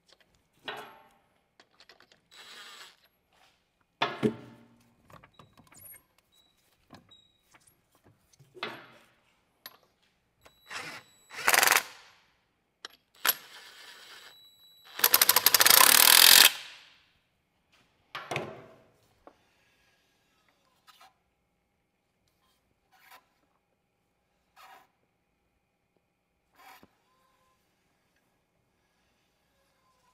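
Cordless impact wrench running lug nuts onto a wheel hub in several short bursts, the longest and loudest about a second and a half long near the middle, after a few knocks as the 20-inch wheel is hung on the hub.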